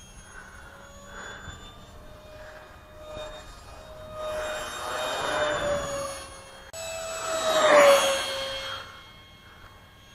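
Electric ducted fan of an RC plane whining as it makes high-speed passes. The whine and its rush of air swell as the plane approaches, and the pitch drops as it goes by; the loudest pass comes near the end.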